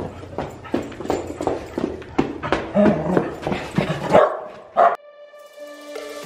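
Corgi barking and yipping in play: a rapid series of short barks for about four seconds that stops abruptly.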